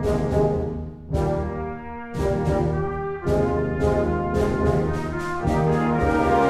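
Concert band playing a brass-led passage: horns and trombones hold chords over sharp, repeated drum strokes. The band grows louder near the end.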